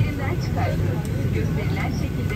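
Steady low hum of an airliner cabin, with a faint voice reading the safety announcement over the public-address speakers.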